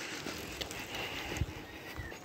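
Faint outdoor background of people walking by, with a few soft knocks, the clearest about halfway through.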